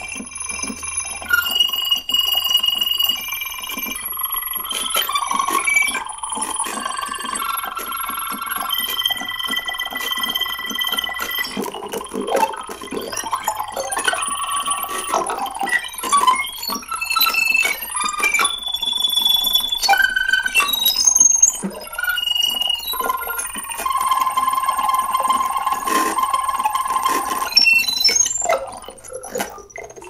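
Electronic synthesizer tones played live from wearable hand controllers and a mouthpiece: overlapping held beeps and bell-like tones at many pitches, changing every second or so, with scattered clicks and little bass.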